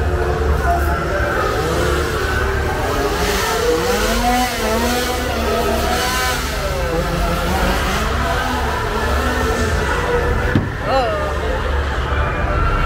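Loud scare-zone soundscape: a deep, steady rumble under a mix of crowd voices and rising and falling pitched sounds, with a short shriek-like glide near the end.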